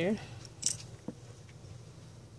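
Small handling sounds of tweezers and card stock on a craft table: a short scratchy rustle under a second in, then a light tap, over a steady low hum.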